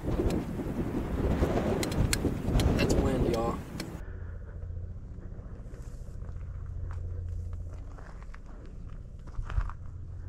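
Wind buffeting the microphone, loud for about four seconds. Then, after a cut, a quieter steady low rumble with scattered light clicks and rustles as a person moves through dry brush.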